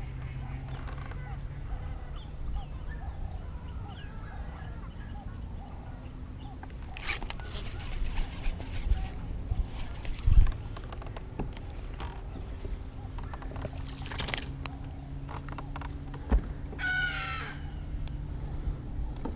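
Fishing rod and baitcasting reel being handled and reeled in, with scattered clicks and rustles and a sharp knock about ten seconds in, over a steady low hum. Faint waterfowl calls come in the first few seconds.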